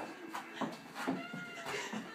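A dog whining in several short, high-pitched cries.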